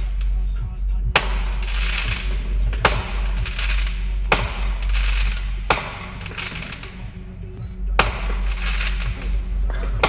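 Music with a heavy, steady bass, cut through by five sharp bangs at uneven gaps of one and a half to two seconds, each trailing off in a brief crackling hiss: fireworks going off.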